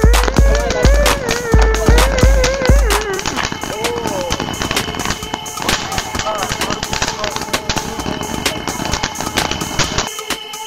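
Music with a heavy bass beat and a singing voice; about three seconds in the beat drops out. Dense, rapid crackling from a spark-spraying ground firework fountain then runs through the rest over quieter music.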